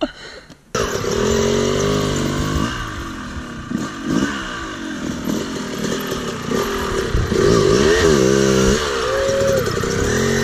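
Dirt bike engine cutting in suddenly just under a second in, then revving up and down repeatedly, with the highest revs near the end.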